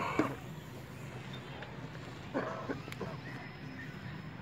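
A man laughing briefly at the start, then a short voice-like call about two and a half seconds in, over a low steady murmur.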